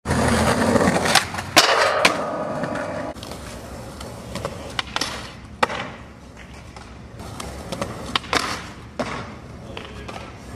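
Skateboard wheels rolling on concrete, loudest in the first three seconds, with sharp clacks of the board popping and landing: three in quick succession early, then several more spread through the rest.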